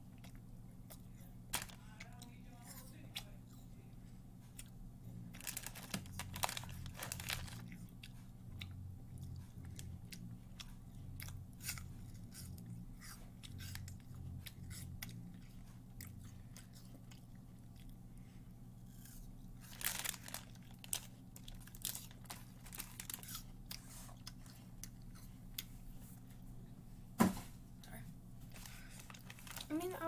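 Close-mouthed chewing and crunching of an apple snack, with short crisp crunches scattered through and a sharp knock near the end, over a steady low hum.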